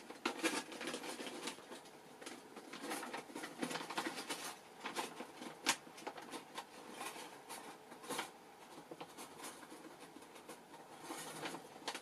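Irregular rustling, scratching and light clicking of paper and small craft supplies being rummaged through and handled.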